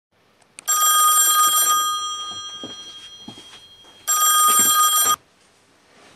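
Telephone bell ringing twice, each ring about a second long: the first fades out slowly, and the second is cut off abruptly as the call is answered.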